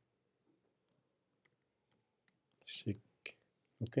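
A few faint computer keyboard keystrokes, about six sharp clicks spaced unevenly, as a short word is typed.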